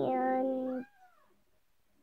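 A single vocal sound held on one steady pitch for about a second, ending in a brief rising-and-falling glide.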